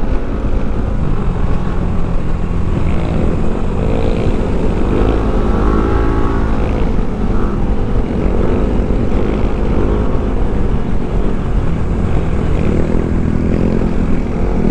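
Motorcycle engine running under way, with heavy wind rush on the helmet-mounted microphone. The engine pitch rises and falls a few times as the throttle is worked.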